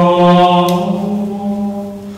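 Male singing of a slow liturgical chant in long held notes, the last note fading away near the end.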